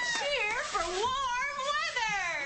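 A woman's high-pitched wordless vocalizing, swooping up and down in pitch for about a second, then holding a longer wavering note.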